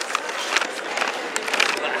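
Handling noise with a few light clicks and rustles, over indistinct background voices in a large echoing hall.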